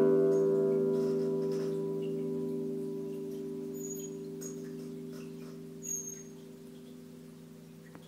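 The last chord of an acoustic guitar ringing out and slowly dying away, as the final chord of the song.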